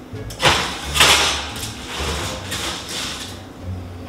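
A foil tray of garlic knots slid onto a metal oven rack: a sharp knock, then scraping and crinkling of foil against the rack, with a few smaller knocks.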